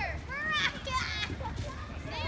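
A group of children playing, several shouting and calling out in high voices that rise and fall in pitch.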